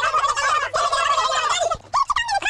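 A cartoon soundtrack jumble of many overlapping voices chattering and squawking at once in a fast, warbling babble. It breaks off shortly before the end.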